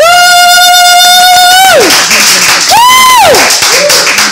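A man shouting a long, loud "Woo!" held at one pitch for over a second before it drops away, then a second, shorter and higher "Woo!" near the end. Audience applause and cheering rise underneath from about halfway in.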